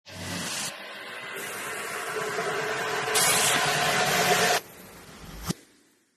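Sound effects for an animated logo intro: whooshing swells of noise that build in loudness and cut off suddenly, then a short rise into a single sharp hit that dies away.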